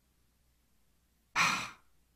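A person sighs once, a short breathy exhale about a second and a half in.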